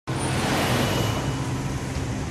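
A car driving past on a city street, its tyre and engine noise easing off toward the end, over steady traffic noise.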